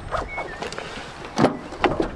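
A Honda Jazz rear door being opened: the outer handle is pulled and the latch releases. There are two sharp clicks, about half a second apart, in the second half.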